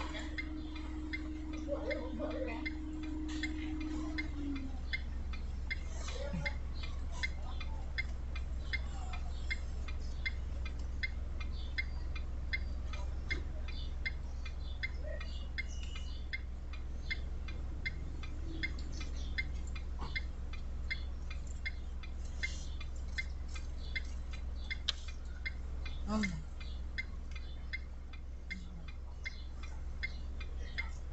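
Car's turn-signal or hazard-light indicator ticking evenly, about two ticks a second, over a steady low hum in the cabin of the stopped car.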